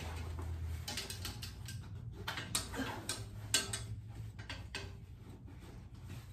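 Pant hanger clips clicking and rattling as they are fastened onto the edges of curtains, in a string of irregular small clicks with the sharpest about three and a half seconds in. A low steady hum runs underneath.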